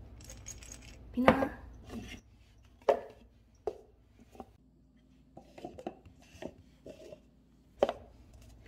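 Cat treats rattling in a plastic treat jar as it is shaken, then a series of knocks and lighter taps as paper cups and the jar are set down on a laminate floor; the loudest knock comes about a second in, with a sharp tap near the end.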